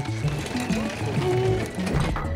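Cartoon background music with a stepping bass line, under a busy mechanical rattling sound effect.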